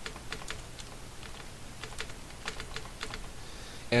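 Typing on a computer keyboard: a string of separate, irregularly spaced keystrokes as a short phrase is typed into a text field.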